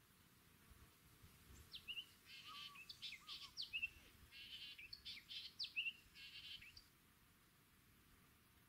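A songbird singing a quick, varied song of sharp whistled sweeps and buzzy notes. It starts about two seconds in and lasts about five seconds.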